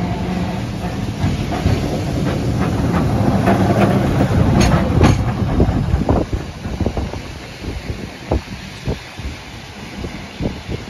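Vintage electric tram running past on grass-laid track, its wheels clacking over the rails. The sound builds to its loudest as the tram passes, about four to five seconds in, then fades to separate wheel clacks as it moves away.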